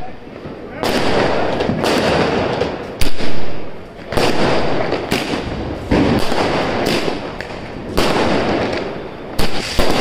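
A multi-shot aerial firework cake on the ground firing shells in a series, a sharp bang about once a second with a rushing noise between shots, loudest about three seconds in.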